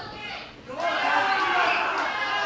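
A person's long, high-pitched shout, starting just under a second in and sliding slowly down in pitch.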